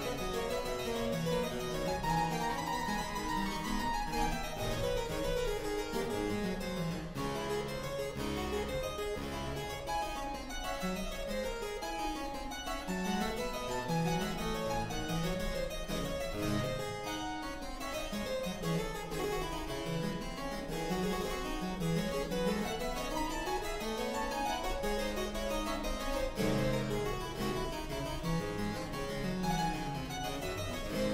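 Two-manual harpsichord playing a fast Baroque piece, its plucked notes running in quick scales that rise and fall.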